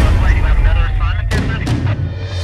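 A deep, loud boom as the music cuts out, followed by a low rumble. Two sharp cracks come close together about a second and a half in, and brief shouting voices can be heard.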